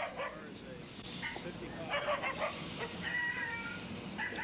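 A short laugh, then scattered animal calls.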